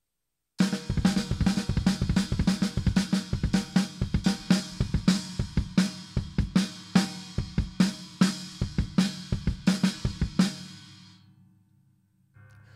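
A drum kit fill: both hands striking snare drum and china cymbal in unison over a double bass drum pattern, in a fast "bada bada bada" feel. It starts about half a second in and stops near the end, leaving the cymbals ringing out and fading.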